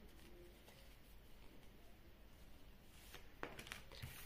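Near silence: room tone, with a few faint soft clicks in the last second as tarot cards are handled on the table.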